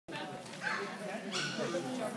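A dog barking twice, short and sharp, over people chatting.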